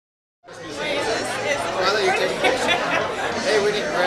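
Many people talking at once in a large room, a loud hum of overlapping chatter, cutting in suddenly about half a second in.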